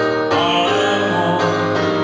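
A man singing into a handheld microphone over instrumental accompaniment, holding and bending sustained notes.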